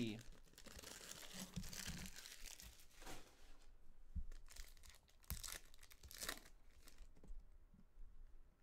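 Foil wrapper of a trading-card pack crinkling in the hands and being torn open, in several short, sharp rips.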